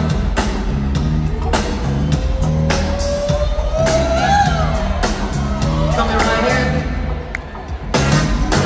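Live band music in an arena: a steady drum beat and bass line, with a long, slowly rising note through the middle and crowd whoops. Near the end the music drops briefly before a hit comes back in.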